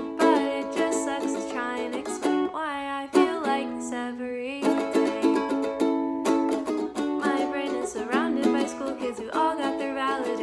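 A woman singing a slow melody while strumming chords on a ukulele.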